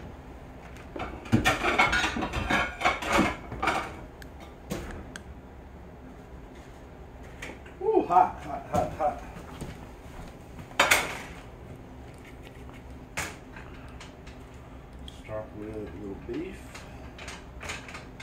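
Dishes clattering as a plate is fetched, a quick run of clinks and knocks, followed by a few separate knocks of crockery set down.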